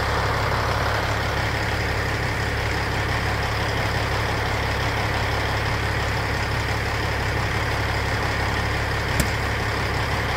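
Diesel engine of a Freightliner semi tractor idling steadily, with one brief click about nine seconds in.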